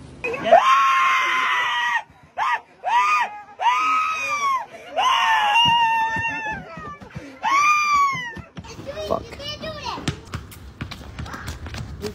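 A person screaming over and over: one long high scream held for more than a second, then a string of shorter screams that rise and fall in pitch, dying away about two-thirds of the way through.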